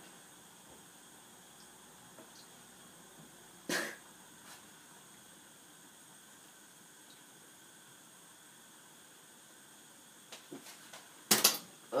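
A man coughing once, a short harsh cough about four seconds in, his throat irritated by the chilli powder he has just eaten; otherwise a quiet room. Near the end come two sharp, much louder bursts.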